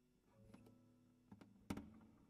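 Classical guitar in a pause: near silence after a chord has died away, broken by a few soft, short plucked notes, the last one, near the end, a little louder.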